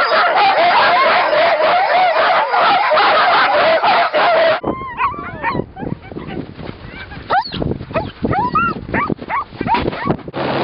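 A team of harnessed sled dogs barking, yelping and howling together in a dense, continuous chorus. About halfway through it breaks off abruptly to scattered single yelps and barks.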